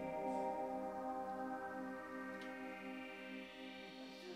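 A rock band's final held chord fading out slowly: a steady cluster of sustained tones with a faint, regular pulsing in its lower notes.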